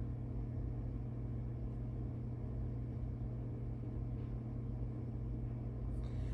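Steady low hum of room background noise, even and unchanging, with no distinct events.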